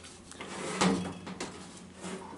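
A few light knocks and scrapes, the loudest a little under a second in, as a galvanized steel duct chute is handled on a wooden workbench.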